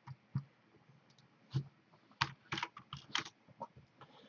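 Computer keyboard typing: a short, irregular run of keystrokes, a few scattered at first and then a quick cluster in the second half.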